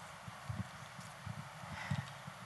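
Soft, irregular low thumps and knocks of handheld microphones being handled as they are lowered and raised, heard under faint room hiss.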